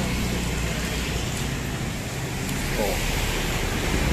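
Steady hiss of rain with a low hum underneath.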